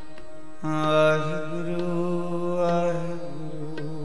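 Sikh kirtan: a harmonium's held drone with light tabla strokes. About half a second in, a long sustained sung note joins the drone and fades away after a couple of seconds, between lines of the shabad.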